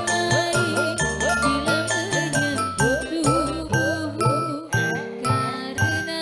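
Live dangdut orkes band playing an instrumental passage: a melody line bending up and down in pitch, short bright high notes and a steady drum rhythm.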